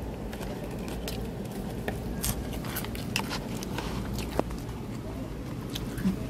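Steady low outdoor background noise with scattered small clicks and taps of eating: a plastic fork in food containers, and chewing.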